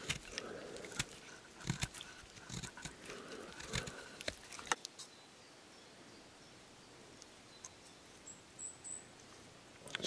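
Knife blade of a multi-tool shaving and carving wood out of a notch in a branch: a run of short scrapes and clicks over the first five seconds, then it stops.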